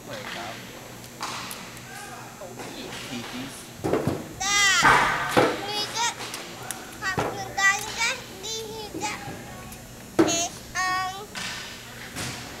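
Children's voices in a large hall: several high-pitched calls and squeals, the loudest about four to five seconds in, more around seven to eight seconds and again near the end, over a steady background din.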